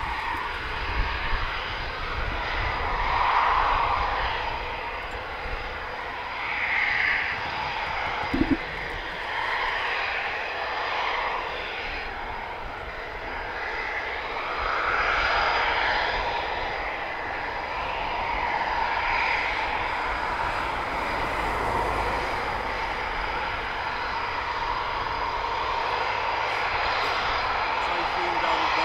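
Eurofighter Typhoon twin EJ200 turbofan jet engines running at taxi power, a continuous jet rush that swells and eases as the aircraft taxi past. There is one brief knock about eight seconds in.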